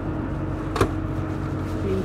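Steady low drone of the boat's twin Volvo Penta D6 diesel engines running underway. About a second in, a sharp click as a stainless steel locker door is shut.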